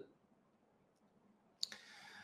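Near silence, then about one and a half seconds in a single sharp click followed by a short soft hiss.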